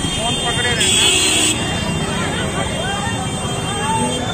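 Busy street crowd: many voices talking at once over the steady running of motor scooters and motorcycles moving through the crowd, with a brief louder, higher sound about a second in.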